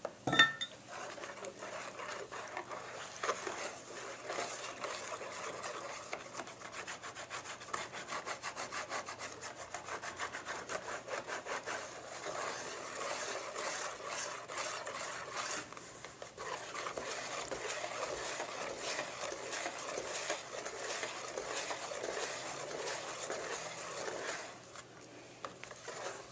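Wire whisk beating thin crepe batter fast in a stainless steel mixing bowl: a rapid, continuous run of wet scraping strokes against the metal. About half a second in, a sharp metallic clank leaves the steel bowl ringing briefly, and the whisking eases for a moment about two-thirds through before picking up again.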